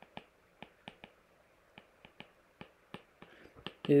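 Stylus tip tapping and clicking on a tablet's glass screen during handwriting: a string of small, sharp, irregular clicks, about three a second.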